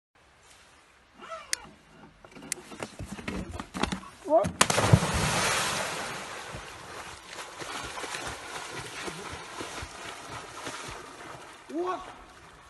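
A person plunging into a lake with a big splash about four and a half seconds in, followed by several seconds of churning, sloshing water as he thrashes and swims away. Short voice exclamations come before the splash.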